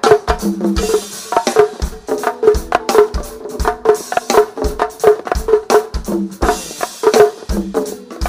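Live go-go band percussion groove, a 'pocket' beat of kick drum and hand-drum hits in a steady syncopated pattern.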